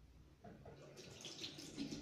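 Faint running water from a tap into a sink, starting about half a second in and slowly growing louder.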